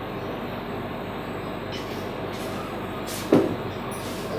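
Steady background noise, with one sharp knock a little over three seconds in as something is set down or struck on the table.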